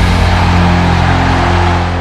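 The closing chord of a heavy rock-style channel intro sting, a loud sustained low note under a noisy wash, held and starting to fade out near the end.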